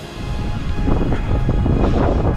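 Background music gives way near the start to wind rumbling on the microphone of a moving runner's camera, with footfalls on wet, boggy moorland ground.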